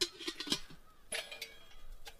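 A few light clicks and clinks from a metal camp cook pot and its lid being handled while a small stove in a soft case is taken out of it, with one near the start, one about half a second in and one about a second in.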